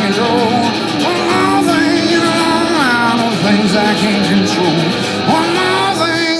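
Live country-folk music: strummed acoustic guitar with pedal steel guitar and a wordless sung vocal line, the gliding melody lines bending up and down.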